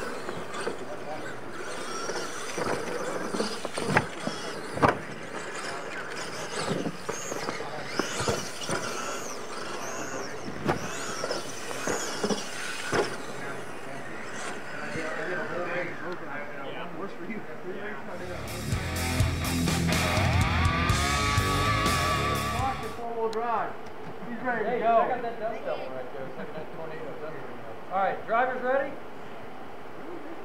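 RC monster trucks racing over dirt ramps, their electric motors whining up and down in pitch, with a couple of sharp knocks about four and five seconds in as the trucks land. A louder, deeper stretch of sound lasting a few seconds comes just past the middle.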